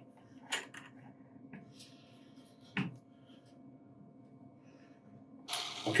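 Faint steady hum of a continuous inkjet printer running ink, with a few light clicks from the metal print head being handled, the two sharpest about half a second and nearly three seconds in. A man's voice starts just before the end.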